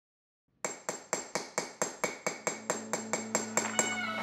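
Rhythmic metallic tapping, about four evenly spaced strikes a second, each with a short bright ring, starting after a brief silence. A low steady tone joins about halfway through, building into the intro music.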